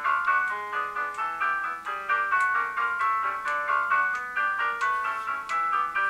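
Recording of a handbell choir playing a fast piece: a busy stream of quick struck bell notes, each ringing briefly, many notes a second.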